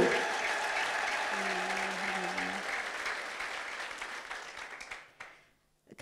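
Congregation applauding, fading away over about five seconds, with a short held tone in the middle of the applause.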